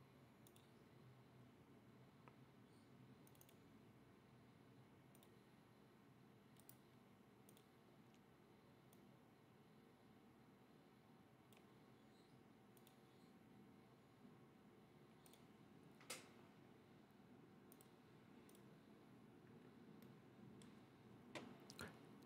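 Near silence: room tone with scattered faint computer mouse clicks, one a little louder about three-quarters of the way through.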